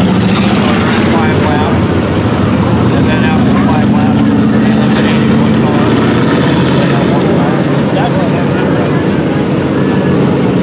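Several dirt-track hobby stock race cars' engines droning steadily as the field circles the oval, the pitch lifting a little around the middle, with spectators' voices mixed in.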